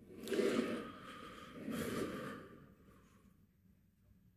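A man's two heavy sighs: a long breath out just after the start, then a second one about a second and a half in.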